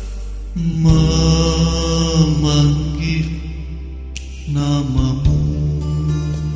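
Slow ballad music: a male voice sings two long, held phrases over an instrumental backing with a steady low bass.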